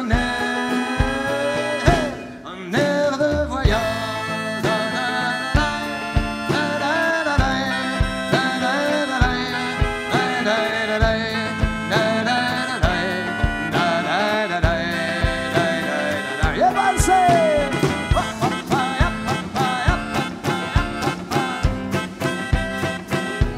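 A live band plays an instrumental passage: a drum kit keeps a steady beat with kick drum and cymbals under guitar, keyboard and a gliding melodic lead line. The band briefly drops out about two seconds in.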